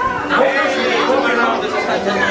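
Overlapping voices: several people chattering at once, no single clear speaker.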